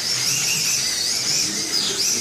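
Slot cars' small electric motors whining at a high pitch as they race round the track, with the pitch wavering slightly as the cars take the bends.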